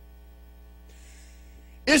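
Steady electrical mains hum with a stack of overtones, quiet, in a pause between spoken words; a faint hiss comes in about halfway through, and a man's voice starts right at the end.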